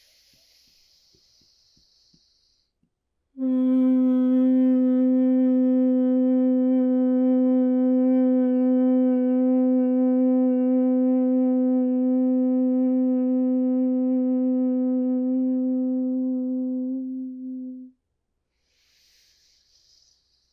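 A woman's soft inhale through the nose, then one long, steady hum on a single low pitch lasting about fourteen seconds: the exhale of bhramari, humming bee breath. It tapers off and stops, and another quiet nasal inhale starts near the end.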